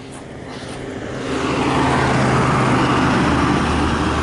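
School bus driving up and passing close by: its engine hum and tyre rush grow louder over the first second or so, then stay loud and steady.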